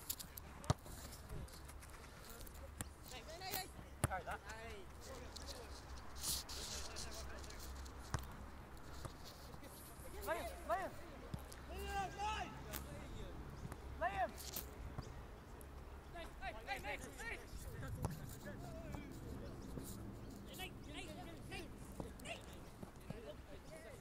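Faint, distant shouts of footballers calling to each other during play, with a few sharp thuds of a football being kicked.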